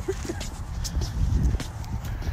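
Wind rumbling on a handheld phone's microphone, with handling noise and scattered clicks as the phone is carried on a walk.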